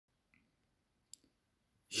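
A single short, sharp click about a second in, against near silence; a man's voice begins right at the end.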